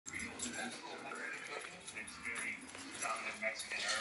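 A dog whining in short, high-pitched sounds, with muffled voices in the background.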